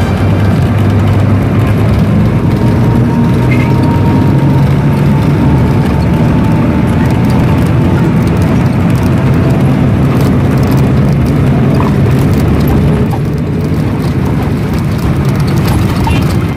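Steady drone of an intercity bus driving, heard from inside the cabin: low engine hum with road and tyre noise.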